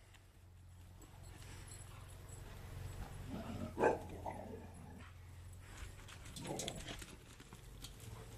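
Leonbergers playing rough: scuffling with faint clicks, and two short dog vocalisations, the louder about four seconds in and another near seven seconds.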